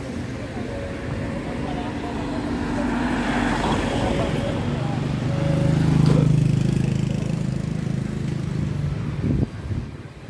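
A road vehicle's engine passing on the street, a steady low hum that builds to its loudest about six seconds in, then fades and cuts off near the end.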